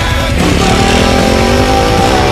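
Dirt bike engine revving, its pitch climbing steadily from about half a second in, over heavy rock music.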